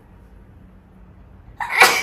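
A woman sneezing once, a single short loud burst near the end, after about a second and a half of faint room tone.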